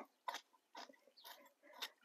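Faint scrapes and crunches of a weeding hoe's blade working through loose soil, about four short strokes roughly two a second.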